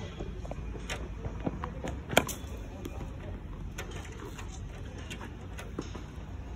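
A single sharp crack about two seconds in, the impact of a cricket ball in net practice, with a few fainter knocks around it over steady outdoor background noise.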